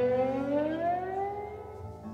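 A sustained note from the band's electric guitar glides slowly upward in pitch and fades away.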